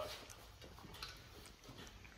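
A few faint clicks and knocks as a bare V8 engine block is rotated on a steel engine stand.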